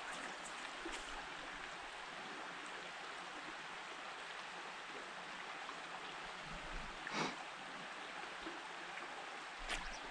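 Small creek running steadily, an even rush of water, with one short scuff about seven seconds in.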